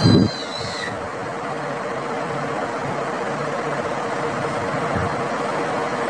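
Steady mechanical whir with a faint constant hum, opening with a short thump and high squeak.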